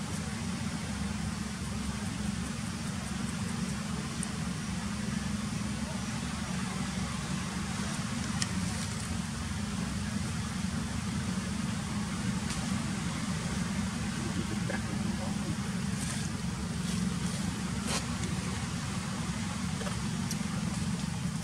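Steady outdoor background noise: a low rumble with a hiss above it and a few faint clicks, unchanging throughout.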